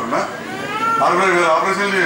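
Only speech: a man speaking Telugu with a drawn-out, held vowel in the second half.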